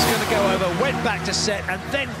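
A male sports commentator's voice talking excitedly over a volleyball play, with music faint underneath.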